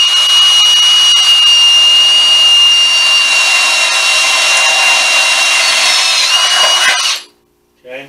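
Power drill running a number 13 bit into a Honda CT90's pressed-steel frame: a loud, steady whine that holds its pitch, dips slightly near the end, and stops suddenly about seven seconds in.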